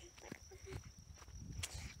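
Low wind rumble on the microphone with faint footsteps through grass, and a single click near the end.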